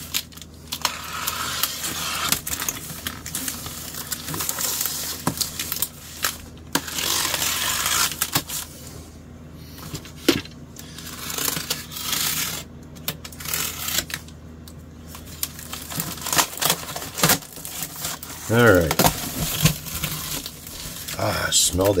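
A cardboard shipping box being cut and opened by hand: packing tape slit along the seams, and stiff cardboard flaps scraping and rustling as they are pulled back, with scattered sharp clicks and taps.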